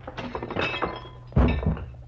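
Radio-drama fight sound effects of a man knocked down onto a coffee table: small clinks and clatter, then one heavy thud about a second and a half in, followed by a smaller knock.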